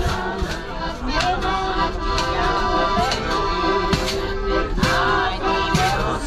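Accordion playing a folk tune with held chords, over a sharp beat about once a second.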